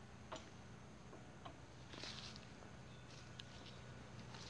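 Near silence: faint outdoor background with a low steady hum, a few soft ticks and a brief high hiss about halfway through.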